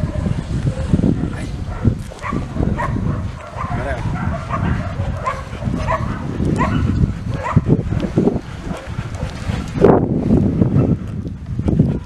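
A dog making short, high vocal sounds, about one a second, over a steady low rumble.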